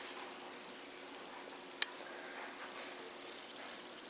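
Fidget spinner whirring steadily, a faint even hiss, with one sharp click a little before the middle.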